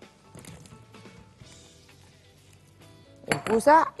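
Sliced zucchini tipped from a glass bowl into a non-stick frying pan to be sautéed in hot olive oil: faint clinks and clatter of glass and kitchen utensils against the pan, under quiet background music.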